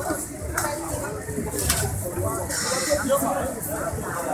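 Voices talking in the background of a street food stall, with two sharp clicks and a brief hiss midway.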